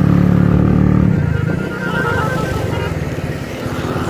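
Single-cylinder 70cc motorcycle engine running while riding in traffic, with another motorcycle close alongside. The sound is loudest for the first second, then drops back.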